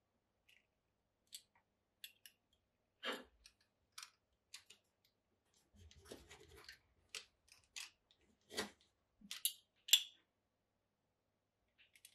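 Vegetable-tanned leather being trimmed off the edges of a moulded case with a blade: a string of short, sharp cutting snicks and clicks at irregular spacing, the loudest near the end, with some softer rubbing and handling around the middle.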